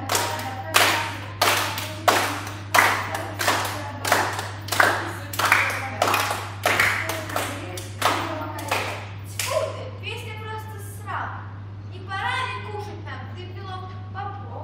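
Hand-clapping in a steady beat, about three claps every two seconds, which stops about ten seconds in; a voice follows.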